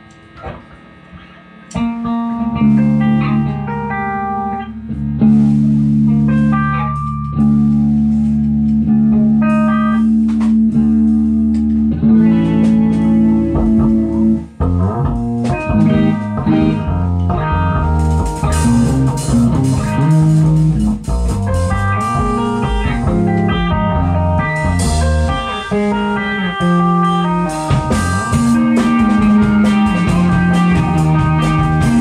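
Electric bass and two electric guitars playing rock together, starting about two seconds in with long held low notes under a line of higher notes. The playing turns busier and denser about halfway through.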